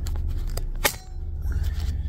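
Knocks and clicks of a phone camera being handled and covered, the loudest a single sharp knock just under a second in, over a steady low hum.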